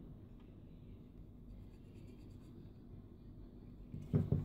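Faint scratching and rubbing of hands on a plastic toy figure as it is turned over, over a low steady hum.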